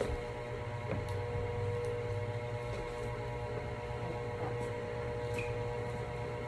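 A steady low hum with several steady higher tones above it and a few faint clicks.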